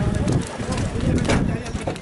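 Rumbling, jolting noise of a pickup truck riding on a rough dirt track, with irregular knocks.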